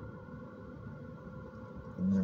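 Faint, steady low hum of background noise inside a car cabin, with no speech.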